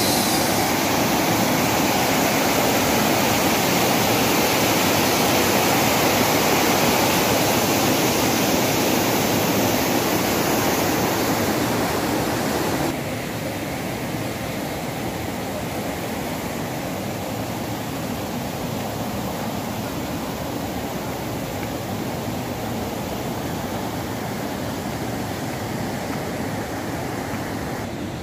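Fast mountain river rapids rushing under a footbridge: a steady, even rush of white water. A little under halfway through it drops suddenly to a quieter steady rush.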